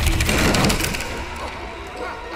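A low rumble with rapid clicking and rattling, loudest in the first second and then fading away.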